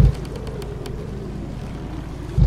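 Steady low ambience of calm open sea and wind, a soft even rumble with a few faint clicks in the first second.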